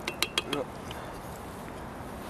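A wooden spoon tapped three times in quick succession against the rim of a metal cooking pot, with a slight metallic ring.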